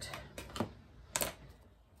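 A few light clicks and taps of a clear plastic rivet placement template and a pencil being picked up and set down on a cutting mat, the loudest tap just past a second in.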